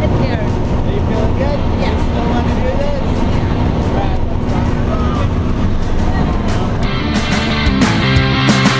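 Loud steady drone of a light aircraft's engine and propeller heard from inside the cabin, with faint voices over it. About seven seconds in, rock music with a steady beat comes in.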